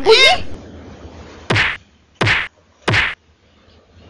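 Three whacking hit sound effects of blows landing, evenly spaced about two-thirds of a second apart, as in a cartoon beating.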